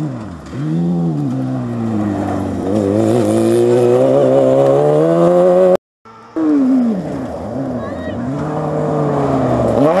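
Off-road racing buggy engine running hard on a dirt stage: pitch dips about half a second in, then climbs steadily under acceleration. The sound breaks off briefly just before the six-second mark, then an engine comes back with several quick lifts and pickups before rising strongly again near the end.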